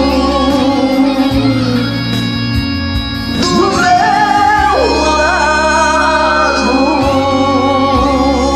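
Two men singing a romantic sertanejo ballad together over a recorded karaoke backing track of sustained chords, with long held notes.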